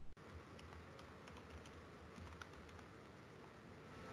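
Faint typing on a computer keyboard: a loose scatter of light key clicks.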